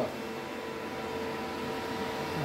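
Steady hum of cooling fans and electronic equipment in a radio repeater room, with a constant whine running through it.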